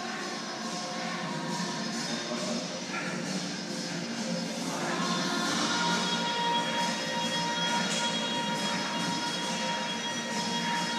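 Music playing over the steady scraping rumble of a plate-loaded push sled being driven along the gym floor.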